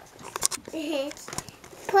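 A few light clicks and taps of small plastic toy pieces being handled, with a brief wordless voice sound about a second in and a spoken word starting at the very end.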